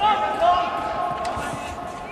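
Men's voices shouting across a football pitch, loudest about half a second in, then easing off.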